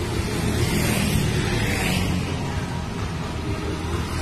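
Motorbike traffic passing close on the road, engine and tyre noise swelling to a peak a second or two in and fading again.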